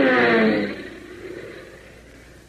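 Radio-drama sound effect of an airplane engine, its note falling in pitch and fading out within the first second, leaving faint hiss from the old transcription.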